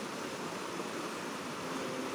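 Fast-flowing creek water rushing past rocks, a steady even rush.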